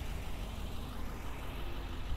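6.6-litre Duramax LMM V8 diesel idling steadily, heard mostly as a low, even rumble with no sudden events.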